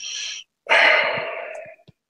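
A person breathing close to the microphone: a short breath, then a longer, louder breath out, like a sigh, fading away.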